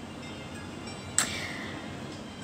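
A single short click about a second in, followed by a faint tone that fades away, over low steady background hiss.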